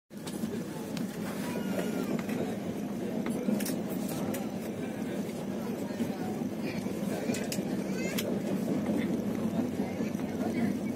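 Moving passenger train heard from inside the carriage: a steady low rumble of wheels on rails, with scattered sharp clicks.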